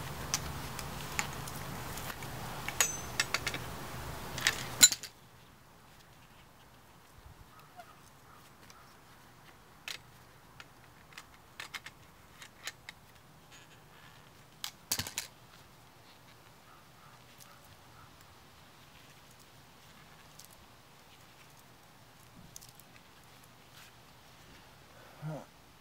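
Scattered metallic clicks and clinks of pliers working brass fittings off a copper pipe. They come thick over a louder background for the first five seconds, then the background drops suddenly and only a few separate clicks follow.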